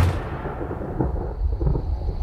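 Deep rumble from the movie trailer's soundtrack: the tail of a heavy boom dies away at the start, then a low rumble continues, with a faint knock about a second in.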